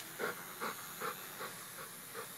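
Pit bull panting close to the microphone, a breath about every 0.4 seconds.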